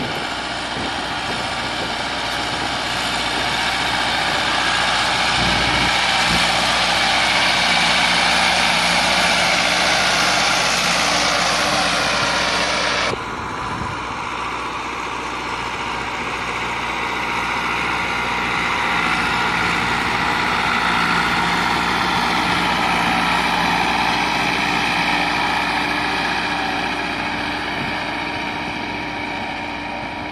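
Massey Ferguson 385 tractor's diesel engine running steadily under load as it pulls a cultivator through the soil. The engine sound swells and then changes abruptly about 13 seconds in, where one shot cuts to the next.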